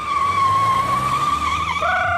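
Car tyres squealing in one long, slightly wavering screech as the vehicle pulls away hard; near the end a second, lower squeal joins and the pitch steps up.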